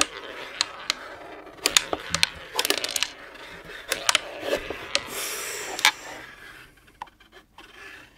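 Klask board game in fast play: irregular sharp clicks as the small plastic ball is struck by the magnetic strikers and bounces off the wooden rim, over the scraping of the strikers sliding across the board. The hits come thick for about six seconds, then thin out to an odd click.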